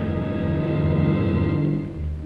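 Dramatic background score music: a low chord of held notes, swelling slightly before easing off near the end.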